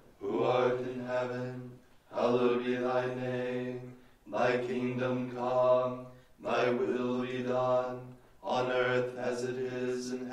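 Liturgical plainchant sung in a low male register, held mostly on steady pitches in short phrases of about two seconds with brief breaths between them.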